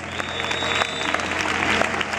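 Live concert audience applauding, many hands clapping at once, with a faint high held tone through the first half.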